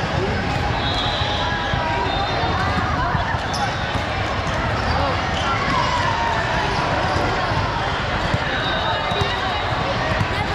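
Indistinct chatter of many voices echoing in a large gym hall, with balls bouncing on the hardwood floor.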